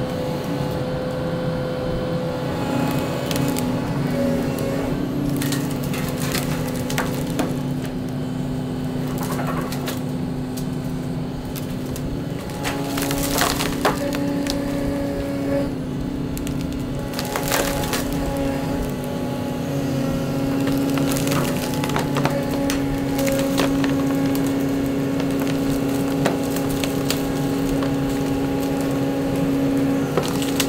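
Volvo excavator's diesel engine and hydraulics running steadily, the pitch shifting a few times as the boom works. Tree limbs crack and splinter as the bucket pushes into them, several sharp snaps coming close together about halfway through.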